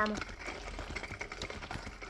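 Radio sound effect of a horse-drawn wagon on the move: faint, quick clip-clop of horse hooves going on steadily.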